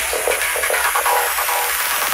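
Progressive psytrance electronic dance music in a breakdown: the bass thins out while a synth plays short stabs about four times a second.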